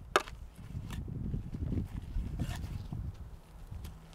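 A spade digging into loose soil and scraping it along, with rough, irregular scuffing and a sharp knock just after the start.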